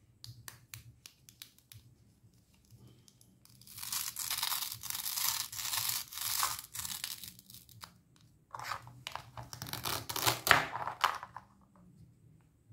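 Hook-and-loop fastener between the halves of a plastic toy star fruit being pulled apart: two long ripping rasps, the second ending as the halves separate. Light clicks of plastic being handled come first.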